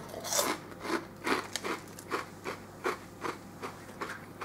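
A person chewing a mouthful of popped potato crisps close to the microphone: a steady run of crisp crunches, about three a second.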